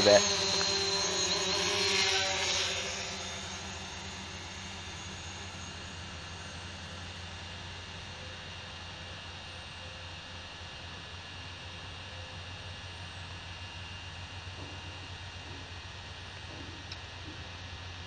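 DJI Mavic Pro quadcopter's propellers and motors whining in flight. The sound is loud for the first couple of seconds, then drops to a fainter steady hum as the drone moves off.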